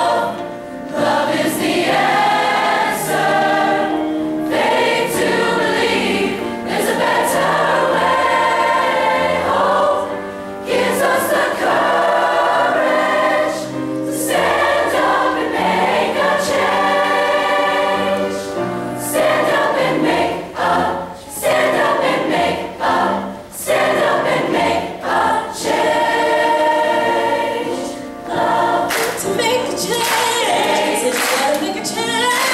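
A large mixed choir of high school voices singing in harmony, its phrases held and separated by a few brief dips.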